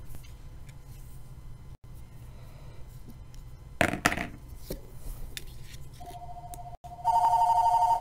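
A telephone ringing: a two-note electronic tone comes in quietly about six seconds in, then jumps to a loud, warbling ring for the last second. Before it come faint handling sounds, with a short rustle about four seconds in.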